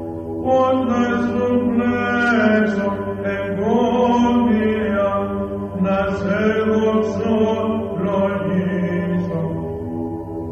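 Byzantine chant of the Greek Orthodox Church: voices singing a slow melody with held, gliding notes over a steady low drone.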